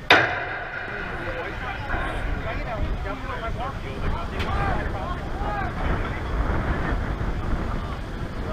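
A softball hitting the chain-link backstop fence near the camera: one loud, sharp metallic clang with a brief ring. Faint voices from the field follow.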